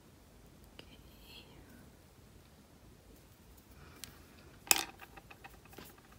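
Quiet handling of a small nail tool against the nails, with a few faint ticks. About three-quarters of the way through comes one sharp click as the plastic-handled tool is set down on the wooden desk, followed by a few small taps.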